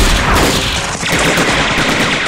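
Battle sounds: an explosion as a rocket strikes an armoured vehicle at the start, amid steady gunfire. Rapid machine-gun fire follows.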